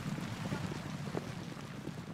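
Steady rushing outdoor noise, like wind on the microphone, easing off slightly, with a few faint knocks.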